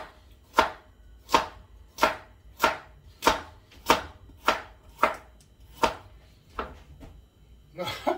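Kitchen knife chopping a carrot on a wooden cutting board: about a dozen sharp knocks at a steady pace of roughly one and a half a second, the last few fainter and further apart.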